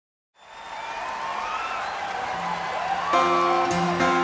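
A large outdoor crowd cheering and whistling as the sound fades in, then a guitar starts strumming chords about three seconds in, loud and rhythmic, opening a live band song.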